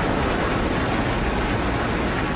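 Steady deep rumble of a glacier front calving, with huge blocks of ice breaking off and collapsing into the ice-filled water.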